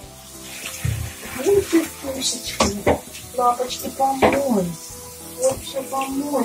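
Water running from a hand-held shower head into a shower tray, with background music playing.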